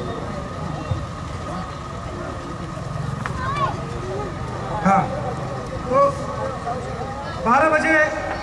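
Spectators' voices calling and shouting, scattered at first and louder in short bursts in the second half, over a steady electrical hum.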